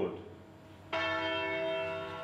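A church bell struck once about a second in, its many tones ringing on and slowly fading.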